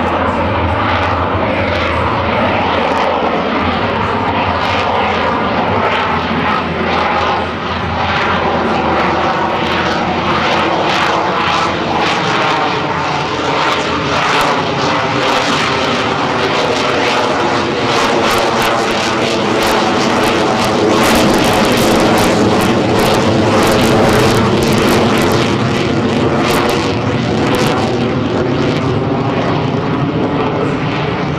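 F-22 Raptor fighter jet's twin turbofan engines, loud and continuous as the jet flies its display, the tone sweeping up and down as it moves across the sky and swelling to its loudest a little after two-thirds of the way through.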